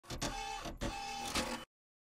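Mechanical whirring with a steady whine, in two stretches with a short break between, ending in a louder burst and then cutting off abruptly about one and a half seconds in.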